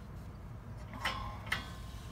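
Quiet, steady low rumble of background noise with two soft clicks, about a second and a second and a half in.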